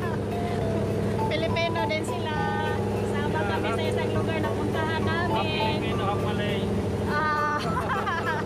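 A small passenger boat's engine running steadily under way, a constant low drone, with people's voices talking over it.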